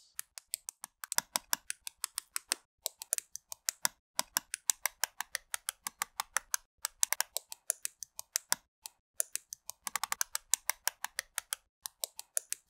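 LEGO plastic bricks and plates being pressed and snapped together by hand: a rapid run of sharp clicks, several a second, with brief pauses.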